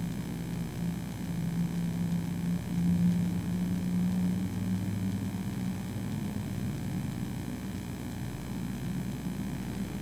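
Low steady hum of the room's background noise, a few low pitched tones that swell slightly for a few seconds, with faint hiss.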